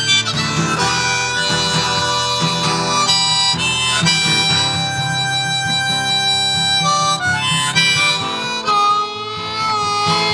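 Harmonica playing an instrumental break in long held notes over acoustic guitar accompaniment, between verses of a folk song.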